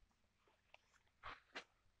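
Near silence, with two faint short rustles about a second and a half in.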